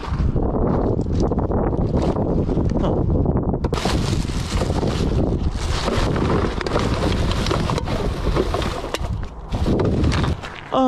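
Wind rumbling on the microphone, joined from about four seconds in by plastic bags crinkling and rustling as gloved hands dig through a recycling bin.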